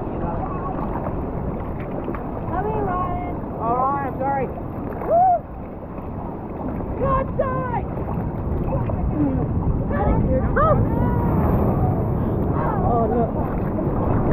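Seawater sloshing and lapping around a camera held at the water's surface: a steady rush of water noise on the microphone, with short voice sounds coming and going over it.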